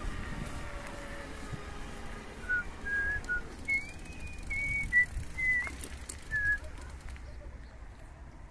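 A person whistling a short tune: a string of about eight clear notes, starting about two and a half seconds in and ending near the end, over a low rumble.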